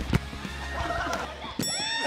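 A foot kicking a ball on a gym floor: one sharp thud just after the start, over background music. About a second and a half in, an edited comedy sound effect with a falling, wavering pitch cuts in as the music drops away.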